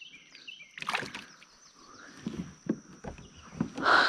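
A bass released into the water with a splash about a second in, followed by water sloshing and light knocks against the kayak.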